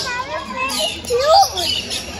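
A young child's high-pitched voice calling out in short bursts, with faint bird chirps in the background.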